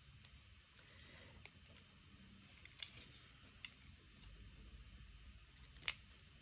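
Near silence with faint handling of paper craft pieces and a few light clicks, the sharpest one near the end.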